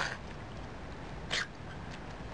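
Two short, sharp sounds from a miniature long-haired dachshund, about a second and a half apart.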